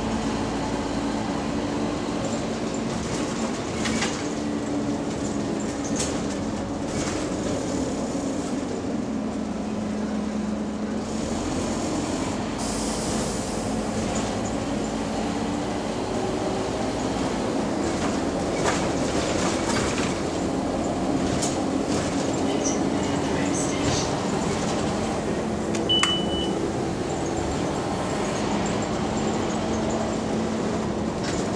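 Lower-deck interior sound of a double-decker bus on the move: the drivetrain and rear axle give a steady whine that drifts up and down in pitch with road speed. Occasional rattles and knocks from the body are heard over it.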